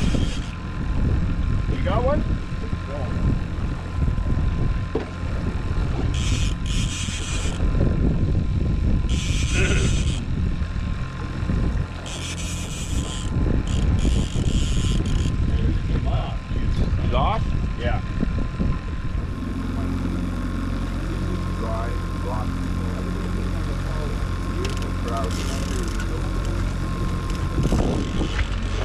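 Boat's outboard motor running steadily at trolling speed, with wind rumble on the microphone and a few brief hissy bursts in the first half; the motor's hum comes through steadier and clearer in the second half.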